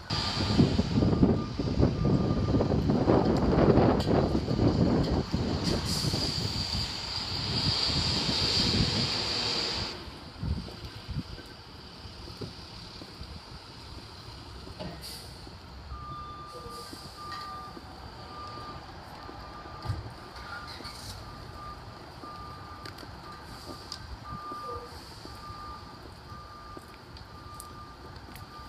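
Vehicle reversing beeps: short electronic beeps at one steady pitch, about one a second, clearest in the second half. For the first ten seconds a loud rush of noise covers them, then cuts off suddenly.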